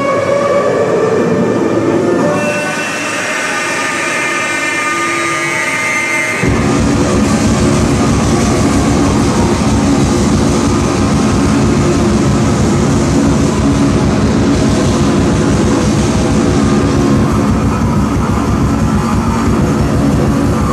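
Loud live electric bass and drum music. Held high tones give way, about six seconds in, to a sudden dense, distorted wall of sound with heavy low end.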